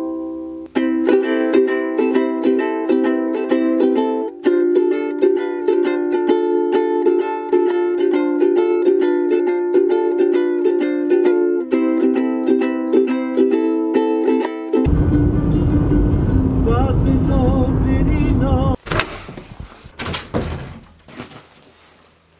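Ukulele strummed in a steady rhythm of chords, changing chord a couple of times. About 15 s in the strumming gives way to a loud rushing noise lasting some four seconds, followed by a few faint knocks.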